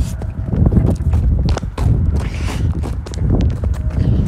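Hurried footsteps, a quick irregular run of thuds, over heavy rumble and rubbing from a handheld phone's microphone as it is carried along.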